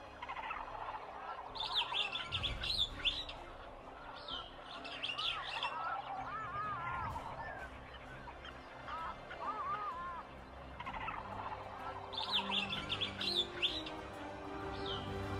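Birds calling, tropical-jungle style: clusters of quick high chirps come three times, the last near the end, between lower warbling, looping calls.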